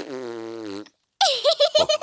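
A cartoon child blowing a raspberry with her tongue out instead of whistling: a buzzing, spluttering sound that lasts just under a second. A voice follows about a second later.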